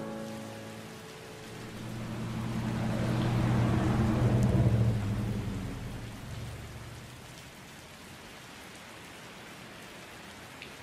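Rain with a low rumble of thunder that swells to a peak about halfway through and then fades, leaving steady rain.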